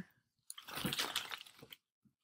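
A handful of fresh leaves rustling and crackling as they are handled and put into a box, lasting about a second.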